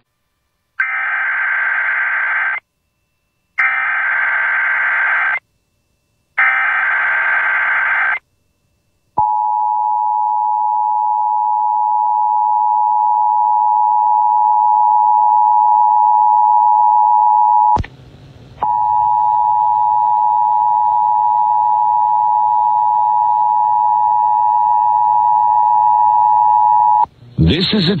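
Emergency Alert System broadcast: three short bursts of the SAME digital header data tones, then the steady two-tone EAS attention signal held for about eighteen seconds, broken once by a short dropout midway. A test announcement begins right at the end.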